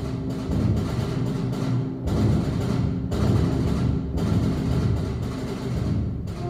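Student concert band of sixth-graders playing a piece together, woodwinds and brass over a steady pulse of accents about once a second.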